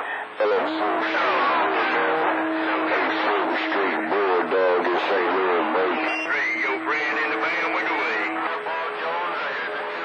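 Music coming in over a CB radio channel as a skip signal, heard through the receiver's speaker. The signal starts suddenly, and a long held low note runs under sliding, wavering higher notes until it stops near the end.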